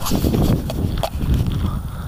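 Wind buffeting the microphone of a handheld camera, a loud low rumble, with a few faint knocks from the camera being swung around and from footsteps on a dirt track.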